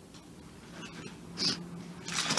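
A teenage girl's quiet tearful pause at a microphone: a quick sniffing intake of breath about one and a half seconds in, then a faint held hum of her voice near the end.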